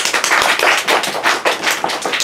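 A small group of people applauding, many quick hand claps overlapping.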